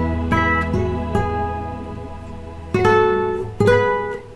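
Nylon-string classical guitar played fingerstyle in a slow, gentle piece: plucked notes ring out and fade over a held low bass note. Near the end come two louder plucked chords, about a second apart.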